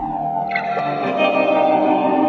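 Instrumental stretch of a song with no singing, made of held chords. The deep bass drops out at the start, and a new chord comes in sharply about half a second in.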